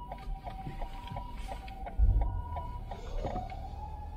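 Tokyo Fire Department ambulance siren alternating between two tones, high and low. About halfway a short, loud low thud sounds, and near the end the siren changes to a tone that rises and then holds steady.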